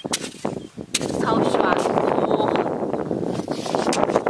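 A steel hoe chopping into firm, clayey mudflat soil: two sharp strikes, one at the start and one about a second in, followed by the crumbling and scraping of clods as the soil is turned over.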